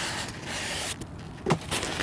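A styrofoam packing insert slides out of a cardboard box, making a scraping rush for about a second. A few small knocks and creaks follow as the foam is handled.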